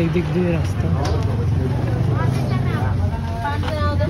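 Chatter of passers-by in a crowded market passage, over a steady low rumble that swells through the middle of the moment.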